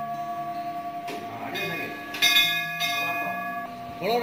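Hindu temple bell rung by a contactless sensor mechanism, set off by a raised hand with no one touching it. It gives repeated strikes and a long, sustained ring, with the loudest strike about two seconds in.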